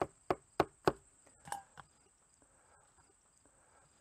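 About six sharp taps in quick succession over the first two seconds: a mesh strainer knocked down onto a coffee filter to shake out wet, washed cucumber seeds.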